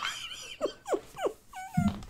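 Men laughing hard, trailing off into a few short, high, squeaky laughs that slide down in pitch.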